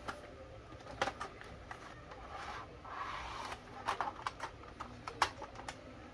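Cardboard box and clear plastic blister tray handled: scattered clicks, taps and rustles as the tray slides out and is set down. Faint, short low coos repeat underneath, typical of a dove or pigeon cooing in the background.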